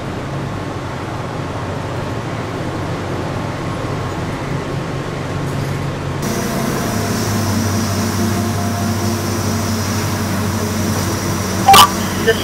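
A transit bus's diesel engine idles with a steady low hum. About six seconds in, the sound changes to a louder, steadier drone with a faint high whine over it. A sharp, loud click comes just before the end.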